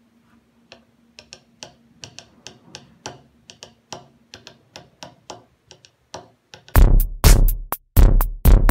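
Light, irregular tapping clicks, about two or three a second, from a hand working at a small mic-amp sensor circuit on a table. About seven seconds in, loud electronic music with a drum-machine beat cuts in.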